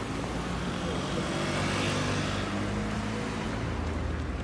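Small motor scooter passing by on the road, its engine and tyres growing louder to a peak about two seconds in, then fading as it goes past.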